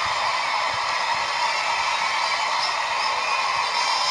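Large stadium crowd cheering, a steady continuous roar.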